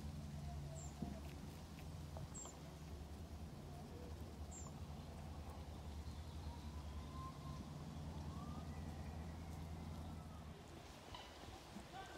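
Quiet outdoor background: a steady low hum, with a few short, faint high chirps in the first half.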